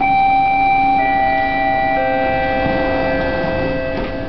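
Three-note descending chime over a Detroit People Mover car's public-address system, one note a second, each ringing on under the next, the signal that a station announcement follows. A steady low hum from the moving car runs underneath.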